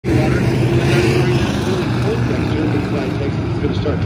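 A field of IMCA stock car V8 engines running together at pace speed as the pack circles the dirt oval before the start, a steady low drone.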